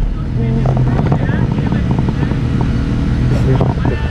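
Suzuki GSX-R sportbike's inline-four engine idling with a steady low rumble, heard from a camera mounted on the bike.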